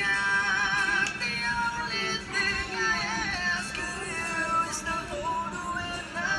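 Male vocalist singing a rock song over acoustic guitar, his held notes wavering with vibrato.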